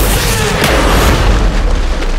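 A loud, deep cinematic boom with a heavy sustained low rumble and a wash of noise above it, mixed with dramatic music.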